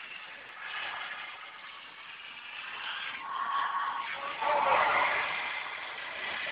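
Steady motorway traffic and tyre noise from moving vehicles, growing a little louder in the second half.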